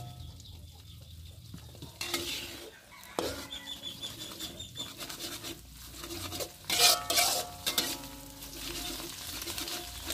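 Metal spatula scraping and clinking against a metal wok while scrambling eggs in hot oil, over a light sizzle. The strokes come irregularly, and the loudest are about two-thirds of the way through.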